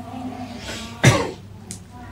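A single sharp cough about a second in, after a faint held "uh" from the speaker.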